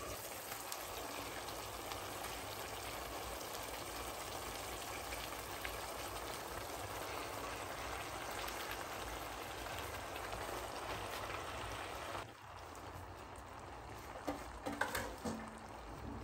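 Masala and oil sizzling steadily in a kadai on high flame under a heap of freshly added spinach. The sizzle drops suddenly to a fainter level about twelve seconds in, with a few brief soft handling sounds near the end.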